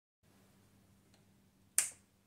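A single sharp, bright snap near the end, dying away quickly, over faint room hum, with a much fainter tick about a second before it.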